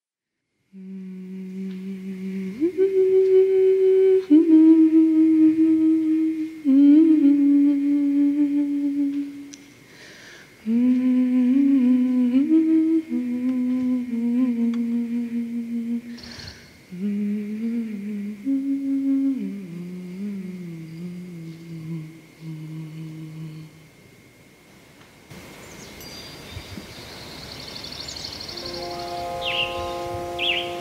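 A woman's voice humming a slow, wordless melody of held notes that step up and down, dying away a few seconds before the end.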